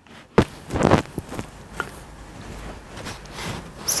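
Hands tousling and fluffing styled hair: a sharp knock about half a second in, a rustle around one second, then faint scattered handling noises.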